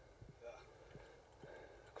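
Near silence, with one faint spoken word about half a second in.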